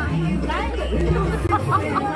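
Several people's voices chattering and laughing over background music with a steady low bass.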